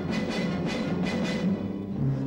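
Loud background film music with a quick, regular beat of repeated hits.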